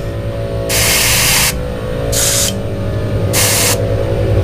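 Gravity-feed airbrush spraying black paint at low pressure in three short bursts of hiss, the first the longest at under a second. A steady low hum runs underneath.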